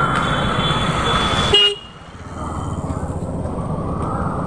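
Street traffic with a vehicle horn sounding, held for the first second and a half. The sound then drops off suddenly and the traffic noise builds up again.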